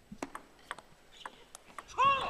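Table tennis ball clicking on the table and the players' bats during a rally, about seven sharp, irregularly spaced knocks.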